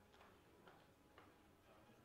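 Near silence in a hall, broken by three faint ticks about half a second apart.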